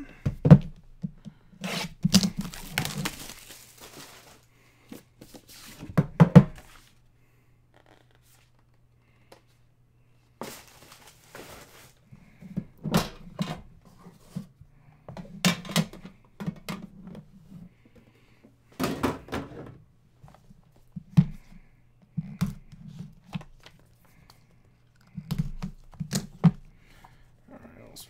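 Cardboard trading-card box being opened and handled by hand: a scattered series of thunks and clicks as the lid comes off and the inner case is lifted out, with two stretches of tearing, about two seconds in and again about ten seconds in.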